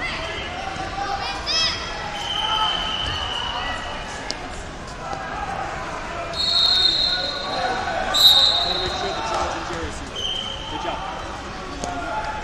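Busy wrestling-tournament hall: crowd voices and shouts echoing, thuds and shoe squeaks on the mats, and several short held whistle blasts, the clearest about six and eight seconds in.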